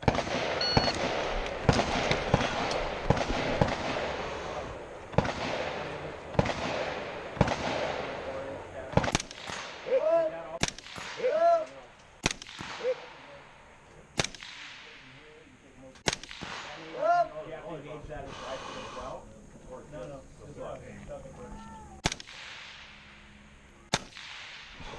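A short high beep, then single rifle shots from an AR-style rifle, each a sharp crack with a reverberant tail. The shots come a second or two apart at first and spread out to several seconds apart later, the last one near the end.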